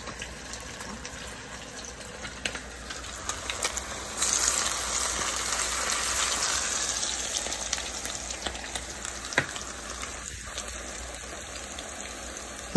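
Salmon patties frying in hot oil in a skillet on medium-high heat, a steady sizzle that grows louder and brighter about four seconds in, then eases back, with a sharp tick near the end.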